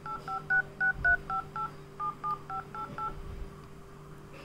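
Standard DTMF keypad tones of a Redmi Note 5 Pro's phone dialer: about a dozen short two-note beeps, roughly three to four a second, as digits are tapped. They stop a little after three seconds in.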